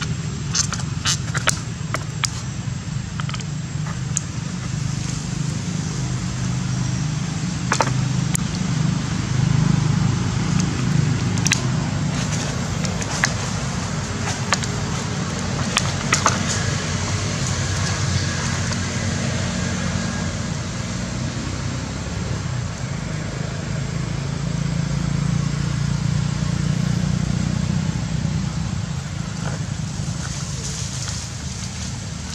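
Crackling and clicking of a thin plastic water bottle as a macaque bites and handles it, in irregular bursts, most of them in the first few seconds and again around the middle, over a steady low rumble.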